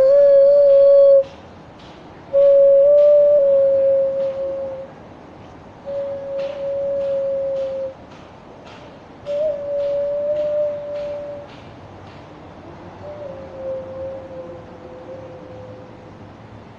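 Xun, the Chinese clay vessel flute, playing a slow melody of long held notes close together in pitch, with small slides between them. There are about five phrases separated by pauses, and the playing grows fainter toward the end.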